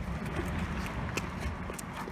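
Steady low outdoor background rumble with a few faint light ticks, while a basketball is in the air on its way to the hoop; no bounce or other loud impact.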